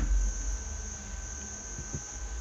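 Room tone: a steady high-pitched whine over faint background noise and a low hum, with a small click near the start.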